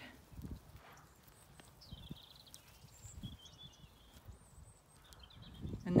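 Quiet pasture ambience: soft, irregular low rustles and thumps, with a few faint high chirping phrases in the middle.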